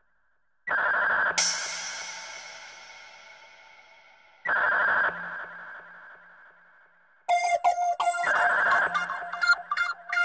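Techno track in a breakdown: the kick drum drops out and two long synth chords ring and fade, the first with a bright hissing swell. A busy, choppy synth pattern comes in a little past seven seconds.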